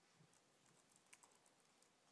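Faint computer keyboard typing: a few scattered soft keystrokes.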